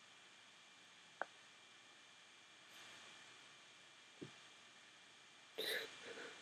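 Near silence: faint hiss with two soft clicks.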